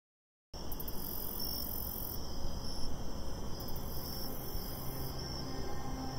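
About half a second of silence, then crickets chirping in repeated high-pitched pulses over a low, steady outdoor background rumble.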